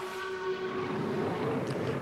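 Formula One car's turbocharged V6 engine holding one steady high note, which cuts out about one and a half seconds in, leaving a hiss of track noise.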